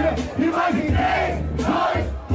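Battle crowd shouting and cheering in reaction to a freestyle rapper's punchline, over a hip-hop beat with a steady bass line.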